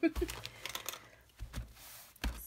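Hands patting a paper towel down onto paper to blot off water droplets: two soft thumps about a second and a half apart, with the paper towel crinkling.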